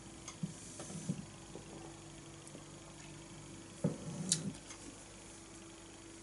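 Faint swallowing of a sip of beer, then a short knock and a small sharp clink about four seconds in as the stemmed glass is set back down on the table, over a faint steady hum.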